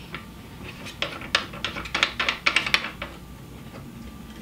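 Quick run of small plastic clicks and rattles, mostly in the middle second or two, as a plastic Christmas-tree tubing adapter is worked onto an oxygen concentrator's outlet nipple.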